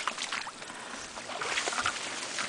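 Irregular splashing and sloshing of shallow water mixed with the rustle of reeds and grass stems, as someone moves through the water.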